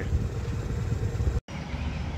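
Steady low engine rumble from a hydraulic excavator working at a distance, broken by a brief total dropout about one and a half seconds in.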